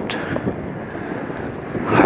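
Steady rush of wind on the microphone of a camera carried on a moving bicycle.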